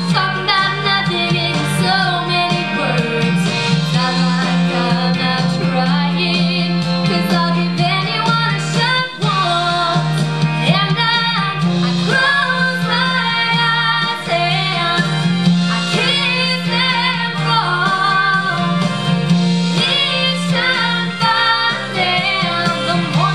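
A woman singing a country-pop song over instrumental accompaniment, her sustained notes carrying a wavering vibrato.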